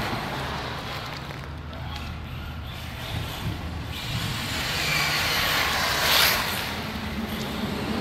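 Radio-controlled car running on loose, dusty ground, its noise swelling as it comes close about six seconds in, over a steady low rumble.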